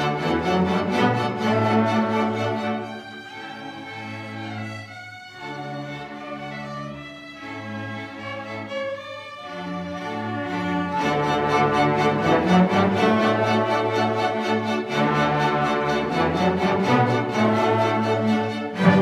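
A high school orchestra playing, with bowed strings (violins, cellos, double basses) to the fore. The music drops to a quieter passage about three seconds in and swells back to full volume about eleven seconds in.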